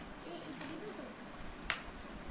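A single sharp click near the end, after faint low voices in the first second.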